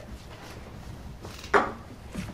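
Low room noise, then about one and a half seconds in a single sharp knock together with a man's short "oh".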